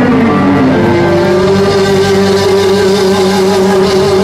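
Live blues-rock band playing, led by an electric guitar that slides down in pitch during the first second and then holds one long wavering note.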